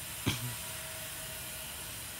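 Steady background hiss of open-air noise, with one brief sharp sound about a quarter second in and a faint steady hum through the middle.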